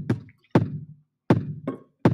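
Drum machine beat from a BandLab Drum Machine track playing a looped pattern at 80 bpm: a drum hit on every beat, about 0.75 s apart, with a lighter extra hit shortly after the last one.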